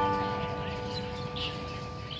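Acoustic guitar's last strummed chord ringing out and slowly dying away.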